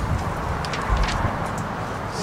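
Steady outdoor background noise: a low rumble with a hiss over it, and a few faint ticks.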